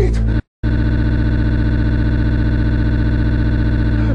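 A man's voice breaks off, then a moment of dead silence. After it comes a sustained, steady electronic buzzing tone rich in overtones, with a fast, even flutter, held unchanged.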